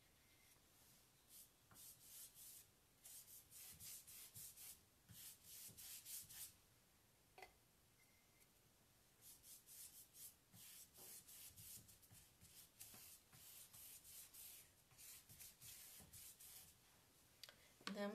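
Faint, quick scratchy strokes of a paintbrush working chalk paint onto a painted wooden dresser edge, in runs of strokes with a pause of a couple of seconds near the middle and a single small click in that pause.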